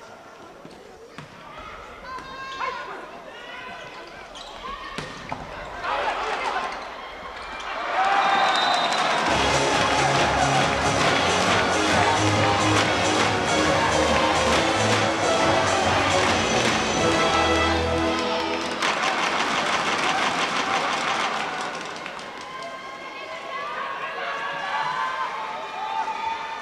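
Volleyball rally: sharp ball strikes and shouting voices, then from about eight seconds in loud arena PA music with a heavy bass line, mixed with the crowd's rapid rhythmic clapping, for about thirteen seconds before easing back to voices.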